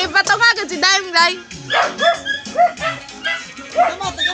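A dog barking and yelping in a quick run of short, high calls, then several single barks spaced about half a second apart, over music playing.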